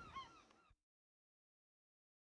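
Birds calling in a quick series of short, arched calls, fading and cutting off within the first second.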